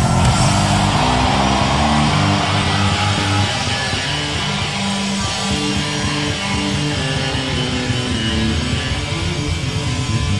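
Live rock band playing, with electric bass and guitar over drums. It is loudest and densest in the first three seconds, then eases a little.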